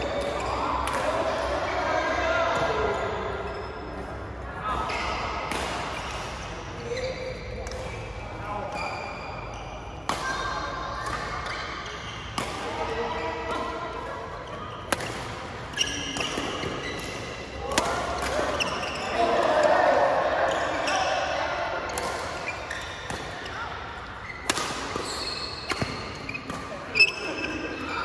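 Badminton rally in a large echoing hall: sharp cracks of rackets hitting the shuttlecock at irregular intervals, the loudest near the end, with shoes squeaking on the court mat and players' voices.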